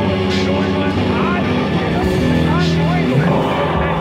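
Live rock band playing loud and raw: guitar and bass holding sustained chords, with drums and a few cymbal crashes, in an instrumental gap between shouted vocal lines.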